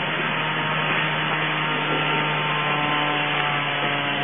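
Steady motor-like drone: an even hiss with a constant low hum underneath, unchanging throughout.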